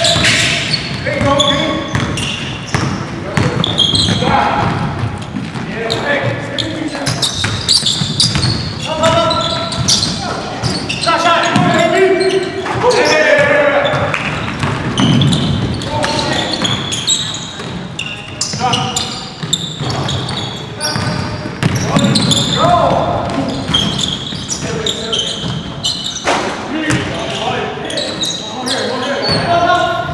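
A basketball bouncing on a hardwood gym floor during play, among players' voices calling out, with the echo of a large hall.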